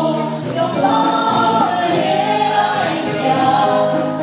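Several voices singing together into microphones, a woman's and a man's among them, with live band accompaniment keeping a steady beat.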